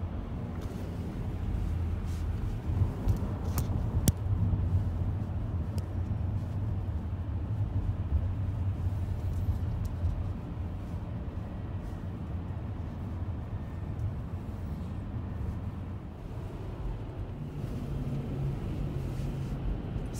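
Steady low road and tyre noise of a car driving at freeway speed, heard from inside the cabin. A couple of sharp clicks come about four seconds in.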